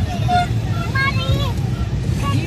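Steady low rumble of a car driving in traffic, heard from inside the cabin, with people's voices calling out over it.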